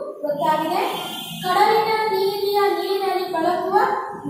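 A woman singing a Kannada poem in a slow, chant-like tune, holding long drawn-out notes.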